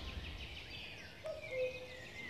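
Faint birds chirping and twittering in short, scattered calls over a quiet outdoor background.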